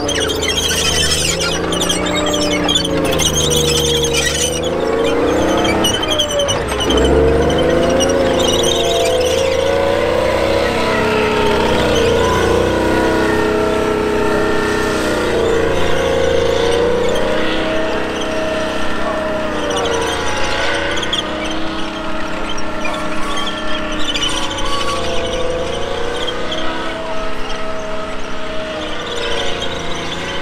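Chieftain tank's Leyland L60 two-stroke multi-fuel engine running hard as the tank manoeuvres, its pitch rising and falling with the revs. The revs drop sharply and surge back about six seconds in.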